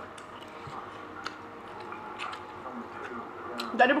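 Mouth sounds of a person eating rice and fish by hand: soft chewing with a few small wet clicks and smacks, over a faint steady background of held tones.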